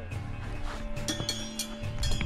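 Background music with steady tones, and a few light metallic clinks about a second in, from trekking poles striking the stony path.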